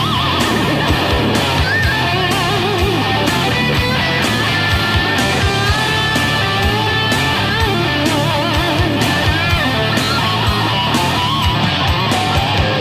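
Heavy, distorted grunge-metal band recording retuned to E standard tuning: a lead electric guitar plays bent notes with wide vibrato over driving drums and bass.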